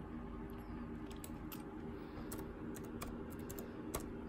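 Computer keyboard keys being typed, a dozen or so light, irregular clicks as a short word is entered.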